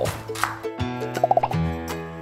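Background music: held notes over a bass line, with a quick run of short higher notes about halfway through and a deeper bass note coming in near the end.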